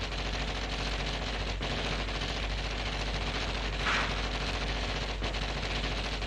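Continuous rapid rattling of a pneumatic hammer at work. It runs steadily, with a brief sharper burst about four seconds in.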